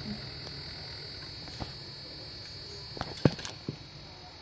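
A few short, sharp clicks and knocks, clustered about three seconds in, over a steady background with a thin high-pitched whine.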